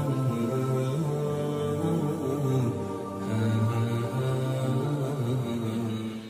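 Men's voices chanting a slow Islamic devotional hymn in long, held notes that move step by step.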